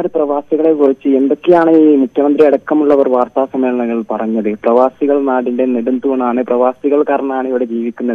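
Only speech: one person talking steadily over a telephone line, with the thin, narrow sound of a phone call.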